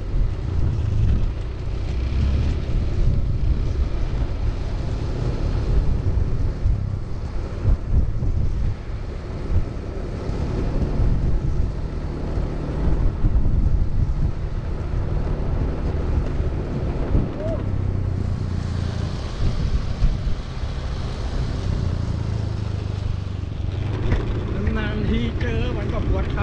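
Steady low rumble of inline skate wheels rolling over rough concrete, mixed with wind buffeting the microphone at skating speed. A voice comes in near the end.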